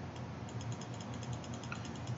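Faint, rapid, evenly spaced clicking, about ten clicks a second, over a low steady hum.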